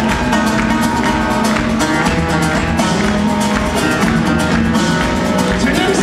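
A live band playing rumba flamenca: several strummed acoustic guitars over drum kit, keyboards and electric bass, loud and steady with a regular beat.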